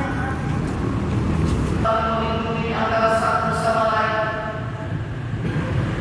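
A man's voice chanting in long, held, wavering notes, starting about two seconds in, typical of the call to prayer (azan) sung in a mosque hall. A low, steady rumble runs underneath.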